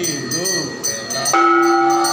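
Aarti music: bells and jingling hand percussion ringing in a steady rhythm under held tones. A voice slides up and down in pitch in the first half, and a strong new held note comes in a little past halfway.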